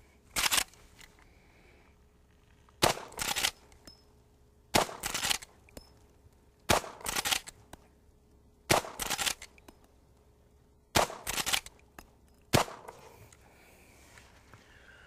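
.45-calibre Marlin lever-action rifle fired seven times in a steady string, one sharp report about every two seconds.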